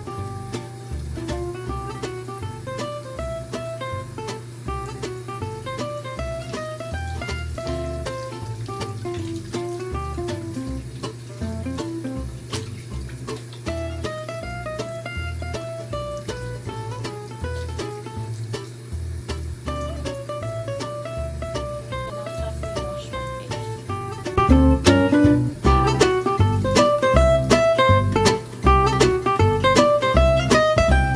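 Background music with a plucked-string melody over a steady beat, getting louder about 24 seconds in.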